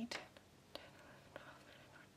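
Faint whispering: a woman counting crochet stitches under her breath, a few soft syllables spread about a second apart over near silence.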